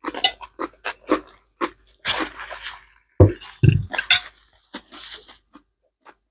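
Close-miked mouth sounds of people eating noodles: a run of short wet smacks and chews, a longer slurp about two seconds in, and a few heavier, deeper mouth sounds a little after three.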